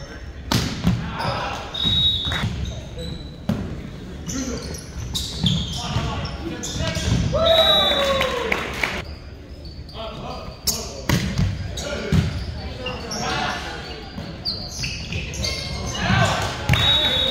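Volleyball rally in an echoing gymnasium: a serve and then a string of sharp ball strikes as the ball is passed, set and hit back and forth, with brief high squeaks of sneakers on the hardwood floor.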